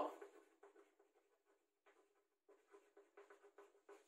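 Chalk writing on a chalkboard: faint, quick scratches and taps of the strokes as words are written, in two runs with a pause of about a second in between.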